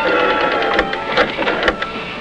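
A few sharp clicks and knocks as the handset of a black rotary desk telephone is lifted from its cradle, over the fading end of some music.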